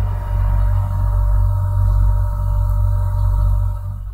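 A steady low hum or rumble with two faint steady tones above it, easing off at the very end.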